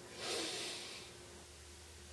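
A man taking a deep breath in, a soft airy rush of about a second that swells and fades, before he holds the breath.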